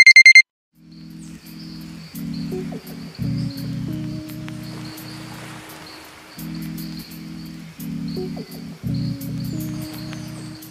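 Electronic alarm beeping, a high tone in quick groups of four, stopping about half a second in. Then background music with repeating low chords and light high ticks.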